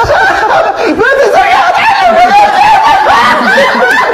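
People laughing hard, with a high-pitched, wavering laugh held almost without a break.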